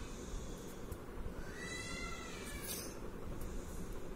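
A single short animal cry, rising and then falling in pitch, about halfway through, over a low steady background hum.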